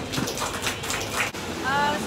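A small crowd clapping briefly, a scattered round of applause that stops after about a second.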